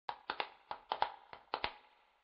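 A quick run of about nine sharp clicks in an uneven rhythm, stopping after about a second and a half.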